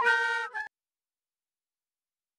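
Andean end-blown cane flutes played together in traditional music, holding a couple of notes. The sound cuts off abruptly under a second in, followed by silence.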